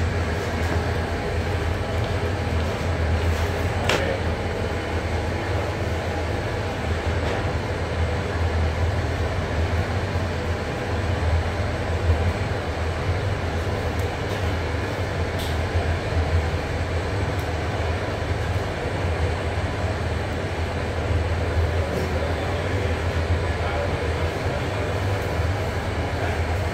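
Steady low mechanical hum with a constant noisy rush, the running drone of commercial kitchen machinery, with a couple of faint clicks.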